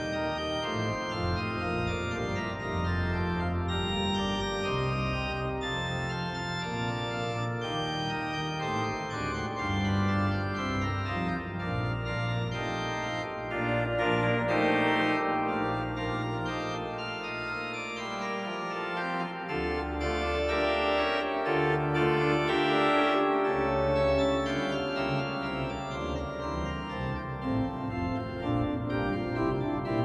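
Customised Viscount Regent Classic three-manual digital organ playing held chords over a moving bass line. Deep pedal notes come in about two-thirds of the way through.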